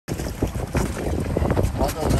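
Wind buffeting the microphone: a heavy, gusty low rumble with rapid irregular flutter.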